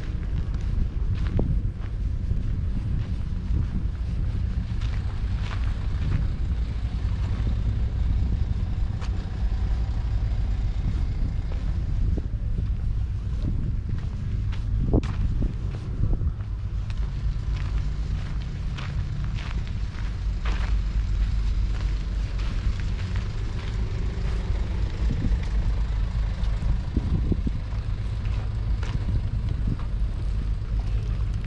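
Wind buffeting a GoPro HERO8's microphone: a steady low rumble, with a few faint clicks and knocks scattered through it, the sharpest about halfway.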